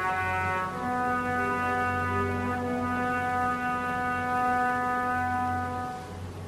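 Opera orchestra's brass section holding one long, loud chord, with a lower note joining underneath about a second in.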